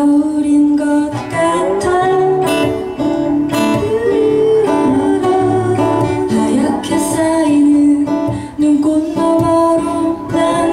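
A woman singing a ballad-like melody live, accompanied by two acoustic guitars, one of them steel-string, plucked and strummed.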